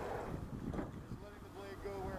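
Wind buffeting the microphone over the water noise of a rowing shell moving through the water, with oar strokes at a low, steady rate.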